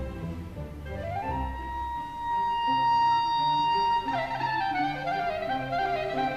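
Orchestral classical music from a 1953 orchestra recording, in a tarantella movement. A high melody note slides up about a second in and is held for nearly three seconds, then breaks into a quick falling run over lower accompaniment.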